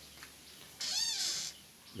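A single short animal cry about a second in, rising and then falling in pitch and lasting under a second, against a quiet background.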